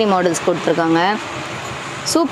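A person speaking for just over a second, then a steady hiss of background noise with no voice in it.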